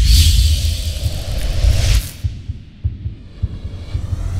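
Branded logo sting of whoosh sound effects over a deep, pulsing bass beat. A loud whoosh sweeps in at the start and fades after about two seconds, while the low pulse runs on underneath.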